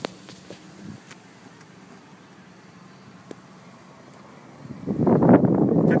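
Faint, steady background noise inside a parked car, with light handling of a handheld camera and a single small click about three seconds in. Near the end a much louder rush of noise comes in.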